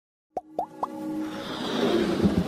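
Animated logo-intro sound effects: three quick pops, each sliding upward in pitch, about a third, two thirds and nearly one second in, then a swelling whoosh that builds under a held musical tone.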